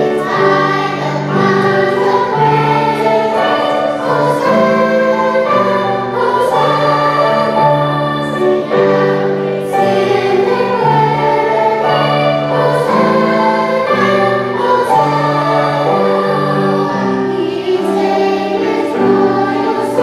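Children's choir singing a hymn together, with piano accompaniment.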